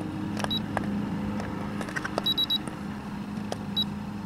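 Blue-Point Amp Hound fuse-drain tester beeping as its fuse-type and fuse-value buttons are pressed: a short beep about half a second in, three quick beeps a little after two seconds, and one more near the end, with light button clicks between them.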